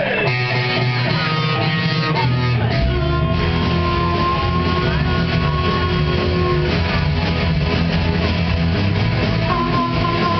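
A live band playing: strummed acoustic guitar and a full low end, with a harmonica playing long held notes over them. The low end fills in about three seconds in.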